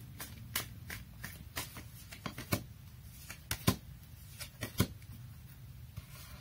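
Tarot cards being shuffled and handled to draw a clarifier card: soft, irregular clicks and taps of card stock, spaced unevenly.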